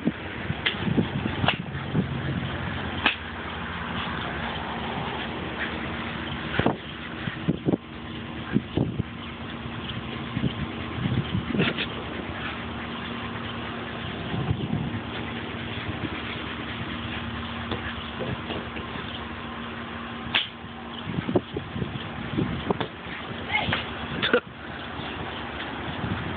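A rubber ball knocking and bouncing on stone patio pavers as a dog plays with it: scattered taps and knocks over a steady background hum.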